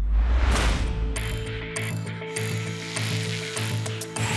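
Logo-animation sound effect: a low swelling whoosh, then mechanical ratcheting, gear-like clicks at a steady pace of a little under two a second over a sustained low hum.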